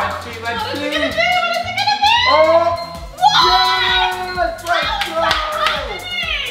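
Excited drawn-out shrieks and exclamations from two people over upbeat background music, while a spinning prize wheel's pointer ticks against its pegs, slowing.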